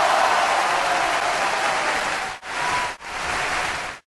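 A steady rushing noise with no clear pitch, dipping briefly twice near the end and cutting off suddenly.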